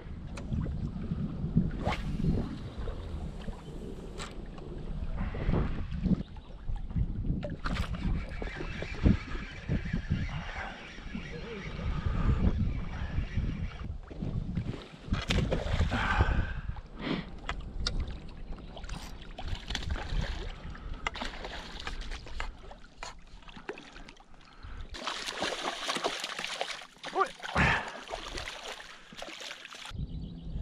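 Wind buffeting the microphone over choppy lake water, with splashes from a hooked rainbow trout thrashing at the surface during the fight. A louder stretch of splashing hiss comes near the end.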